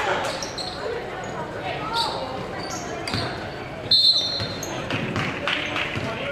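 Basketball game sounds in a gymnasium: a ball bouncing, sneakers squeaking on the hardwood and voices from the court and stands. About four seconds in, a short, loud referee's whistle blast stops play.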